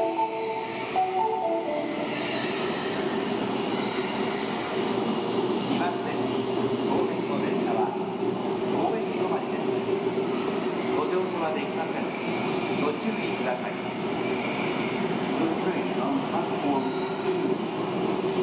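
Osaka Metro Chuo Line subway train pulling into an underground station platform: steady rolling rumble with a constant motor hum. A short run of falling tones sounds in the first second and a half, and a faint high squeal comes about 4 s in and again near the end.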